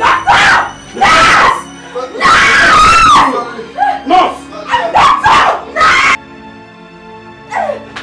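Anguished human screaming and wailing in several loud outbursts over background film music; the screams stop about six seconds in, leaving the music.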